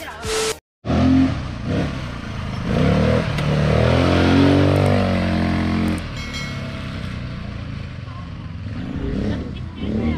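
A vehicle engine running, its pitch rising and falling between about two and six seconds in, then settling steadier, with a brief silent break about half a second in.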